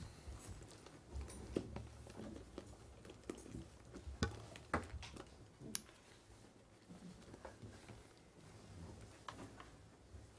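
Quiet room tone with a low hum and a few scattered small clicks and knocks, the sharpest about four and five seconds in.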